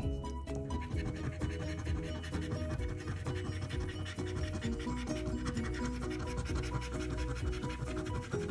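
A coin scratching the silver latex coating off a scratch-off lottery ticket in rapid back-and-forth strokes, over steady background music.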